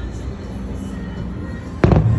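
One loud boom of an aerial firework shell bursting near the end, echoing briefly, over steady music.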